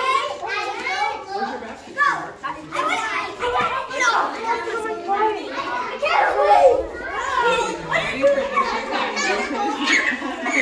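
A group of children talking and calling out over one another, a steady jumble of excited voices with no single speaker standing out.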